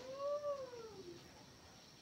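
A single drawn-out animal-like call about a second long, rising and then falling in pitch.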